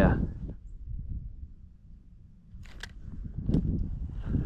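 Low wind rumble on the microphone, with a few short clicks and rustles between about two and a half and three and a half seconds in.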